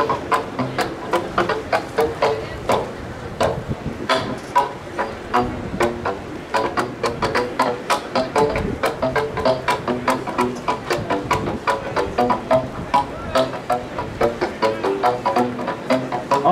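A tubulum, a rig of PVC pipes struck on their open ends with paddles, played in a fast run of pitched notes, several strikes a second.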